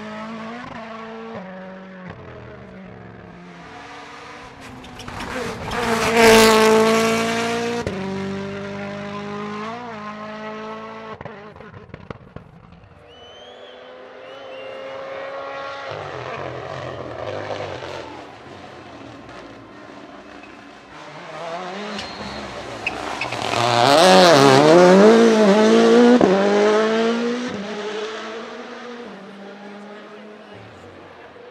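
WRC Rally1 rally cars revving hard as they pass on a stage, the engine note climbing and dropping through quick gear changes. One loud pass comes about six seconds in and the loudest a little before the end, with a car heard fainter in the distance between them and a few short sharp cracks near the middle.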